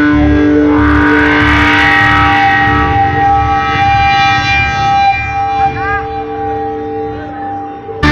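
Live rock band with long held, sustained notes over a beating low drum and bass pulse. The pulse drops away after about three seconds, and the held sound fades out over the last few seconds.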